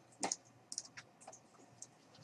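A handful of faint, sharp clicks from a computer mouse and keyboard, used to select files on a computer, the first one the loudest.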